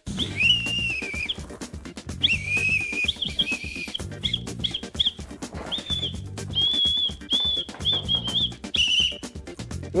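A high whistle blown in a string of notes, a couple of long held ones at the start and then quicker short toots, over background music with a steady beat.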